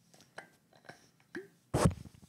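Handling of a metal drinking bottle: a few faint clicks and taps. Near the end comes one short, loud burst of noise.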